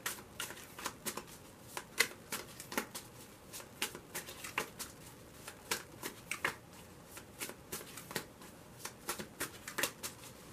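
A deck of tarot cards being shuffled overhand, packets lifted off and dropped from one hand onto the other: a run of light, irregular card slaps and flicks, several a second.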